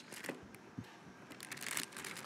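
Faint rustling and crinkling of a clear plastic vacuum-sealer bag being handled, with a few light clicks.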